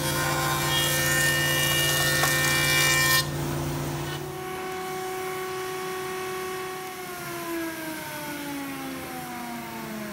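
A woodworking machine's cutter running and cutting along a hardwood strip for about three seconds, machining a drip ledge. The cutting stops, a quieter motor tone runs on, and from about seven seconds in it falls steadily in pitch as the machine winds down after being switched off.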